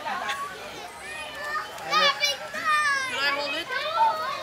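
Children's high-pitched voices squealing and calling out without clear words, several overlapping, loudest about two seconds in.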